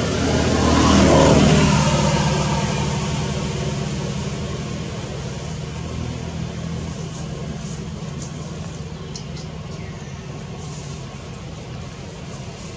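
A motor vehicle's engine passing close by: loudest about a second in, with a falling pitch, then a steady low drone that slowly fades.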